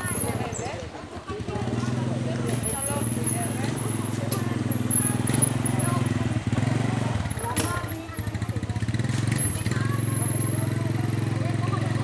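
Motorcycle engine idling steadily, with people talking in the background.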